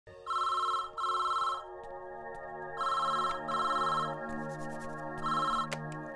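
Telephone ringing electronically in double rings: two pairs of rings, then a single ring about five seconds in. Soft sustained background music plays underneath.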